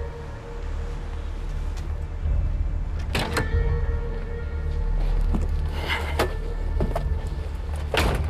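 Background music with a steady low bass over the doors of a classic Ford Mustang being opened and shut. There are sharp clicks and knocks about three seconds in, another around six seconds, and the loudest near the very end.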